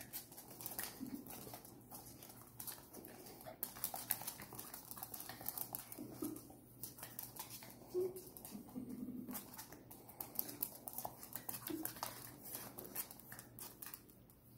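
Small dog's claws clicking and pattering on a hard wood-grain floor as she spins and bites at her own tail, which is bothering her. A few brief low sounds from the dog come in between the clicks.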